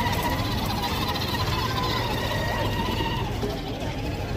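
Busy outdoor market street ambience: a steady low rumble with indistinct voices and faint wavering tones in the background.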